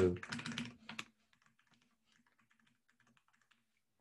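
Computer keyboard keys clicking in a short burst during the first second, then only a few faint, scattered key clicks.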